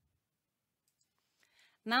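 Near silence with a few faint clicks, then a voice starts speaking near the end.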